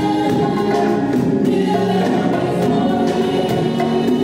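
Gospel choir singing together over drums and percussion.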